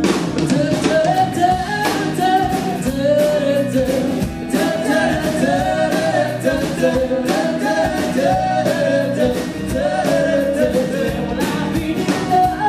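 Live folk-rock band playing: a lead vocal over strummed acoustic guitar, bowed viola, electric bass and drum kit.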